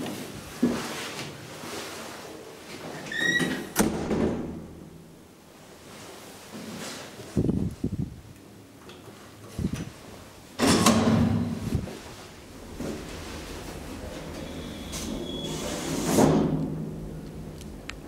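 A DEVE hydraulic elevator under way in its doorless car: a button is pressed, then come a short squeak and a run of mechanical clunks and thuds, the loudest about eleven seconds in, over a low steady hum.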